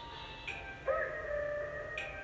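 Intro of a hip-hop beat: a high synth melody of held notes that change pitch about every half second, with a short upward slide into one note about a second in.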